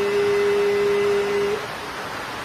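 A man chanting holds one steady sung note for about a second and a half. The note then fades out, leaving a steady hiss.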